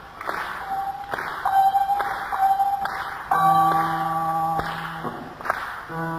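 Guitar in a live band recording, picking a few single notes that ring on at the same pitch, then a held chord with a low bass note about halfway through.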